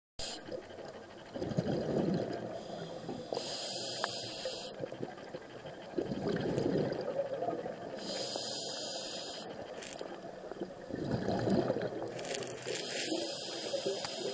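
Scuba diver breathing through a regulator underwater: a bubbling rumble on each exhalation, followed by a hissing inhalation, about three breaths.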